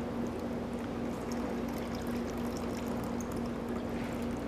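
A shaken cocktail poured from a metal cocktail shaker through a fine-mesh strainer into a martini glass: double straining, a steady, soft trickle of liquid.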